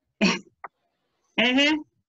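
A person clears their throat once, briefly, over a video-call line, followed by a single spoken word.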